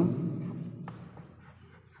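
Chalk writing on a chalkboard: faint scratches and a few light taps as the words are written, after the fading tail of a spoken word at the start.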